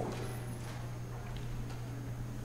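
A pause in speech: a steady low hum with a few faint, scattered clicks.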